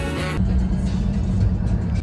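Background music that cuts off suddenly about half a second in, giving way to the steady low rumble of a car's cabin: engine and road noise heard from inside the car.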